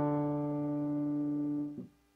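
Electric piano holding the final interval of a two-part dictation exercise in D major: an octave of D3 in the bass and D4 in the treble, the same notes it started on. It sounds steadily, then cuts off sharply near the end.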